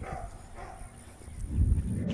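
A dog giving two short whines in the first half second or so, followed near the end by a louder low rumble on the microphone.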